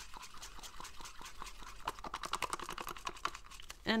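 A stick stirring acrylic pouring paint fast in a small plastic cup, knocking and scraping against the cup wall in a rapid run of irregular clicks.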